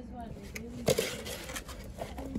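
A glass cookie jar being handled and put back into its cardboard box: a single sharp knock about a second in, followed by a brief papery scrape.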